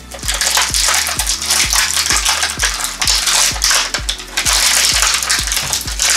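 Thin clear plastic bag crinkling and crackling continuously as a small plastic toy is worked out of it by hand.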